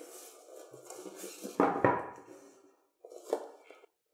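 Cardboard boxes being handled: the inner product box scraping and rubbing against the opened shipping carton as it is taken out, with a louder scrape about one and a half seconds in and a shorter one just after three seconds.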